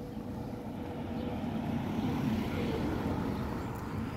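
A car driving past at street speed: a low engine and tyre rumble that builds to its loudest about halfway through, then fades as the car goes by.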